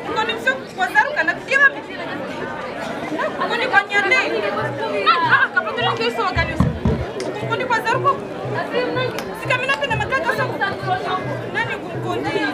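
Several voices talking and calling out back and forth, with a steady low beat of about two a second joining a little before halfway and one deeper low thump just after.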